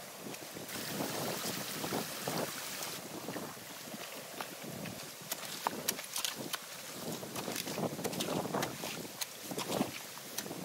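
Water rushing and splashing through a breach in a beaver dam as a rake works at the packed sticks and mud, with scattered sharp clicks and snaps. Wind buffets the microphone.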